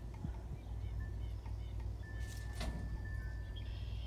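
Quiet outdoor background: a steady low rumble with a few faint, high, bird-like chirps in the first couple of seconds and a thin, steady high tone that comes and goes.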